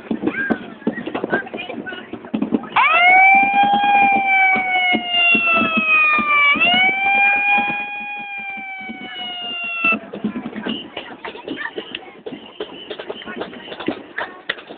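A loud horn sounds one long blast of about seven seconds over crowd chatter. Its pitch sags slowly, jumps back up about halfway through, sags again and then cuts off suddenly. It is typical of a start signal for a walking event.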